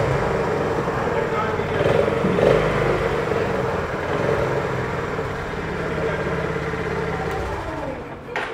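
Honda CB350's air-cooled single-cylinder engine idling with a steady, heavy beat, with a small blip of throttle about two seconds in. The engine sound drops away near the end.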